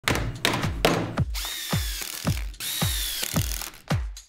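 A power drill running in two bursts, the first about a second long and the second shorter, each with a high motor whine, over music with a steady bass beat. Knocks and tool noise come in the first second.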